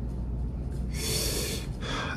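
A man drawing one quick breath in through the mouth, about a second in, lasting well under a second, over a steady low hum.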